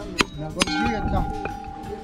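A coconut being cracked open over a metal cooking pot: two sharp knocks, the second leaving the pot ringing with a steady metallic tone.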